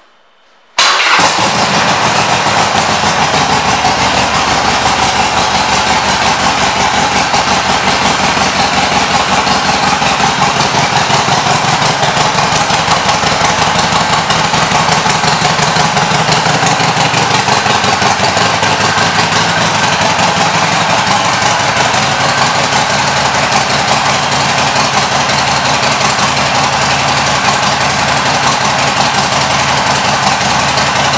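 A 2010 Harley-Davidson Sportster Forty-Eight's air-cooled 1200 cc V-twin with aftermarket exhaust pipes fires up suddenly about a second in, then idles steadily.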